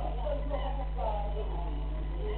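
Indistinct overlapping conversation of several people in a small room, with a steady low hum underneath.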